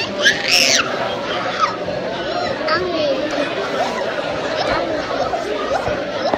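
Busy restaurant dining room chatter, many voices talking at once at a steady level, "loud in here". A high-pitched squeal cuts through about half a second in.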